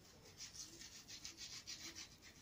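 Faint, quick scraping strokes of a blade peeling the skin off a vegetable, about five or six strokes a second.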